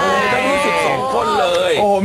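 A group of voices greeting in chorus with a long, drawn-out Thai 'sawasdee kha', followed near the end by a man's exclamation 'oh-ho'.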